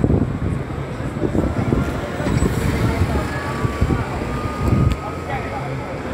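A double-decker bus passing close by and pulling away, its engine and tyres rumbling unevenly, with a faint whine partway through. Street voices and wind on the microphone are mixed in.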